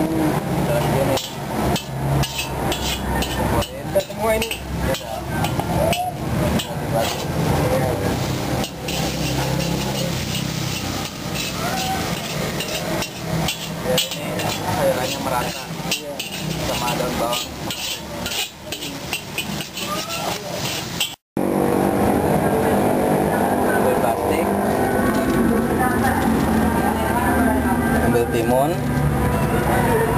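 Metal spatula scraping and clanking against a wok as noodles are stir-fried, in rapid, irregular strikes. About two-thirds of the way through the sound drops out for a moment, then gives way to a steadier background noise.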